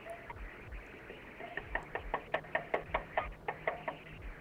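Rapid, uneven knocking on a front door, heard through a doorbell camera's microphone: a fast run of about fifteen knocks starting about one and a half seconds in.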